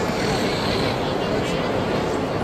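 Steady, loud background noise, strongest in the low and middle range, with indistinct voices mixed in.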